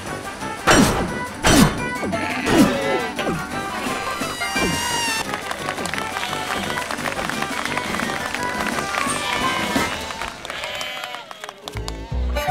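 Cartoon soundtrack: upbeat music with wordless character vocalizations that slide up and down in pitch, and a few sharp thuds in the first three seconds. The sound drops away shortly before the end.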